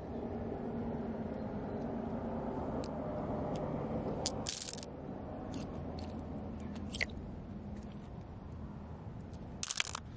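Shallow stream water trickling over stones, louder in the first half. Glass pebbles click and clatter against one another in a plastic colander a few times, loudest about four and a half seconds in and just before the end.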